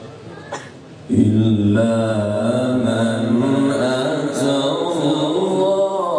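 Male qari's melodic Quran recitation (tilawat): after a short pause for breath, a long drawn-out note begins about a second in, its pitch wavering slowly as it is held.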